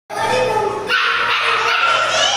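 German shepherd puppy barking as it plays, with children's voices mixed in.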